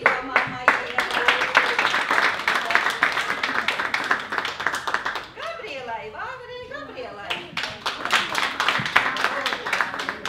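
A room full of people clapping by hand, a loose crowd applause. It thins about five seconds in, where voices come through, then picks up again for the last few seconds.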